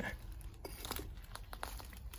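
Dry leaf litter crinkling under a hand, with a few light clicks and knocks as a broken piece of old pipe is set down among loose bricks and rubble.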